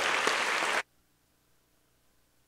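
Audience applauding, cut off suddenly less than a second in.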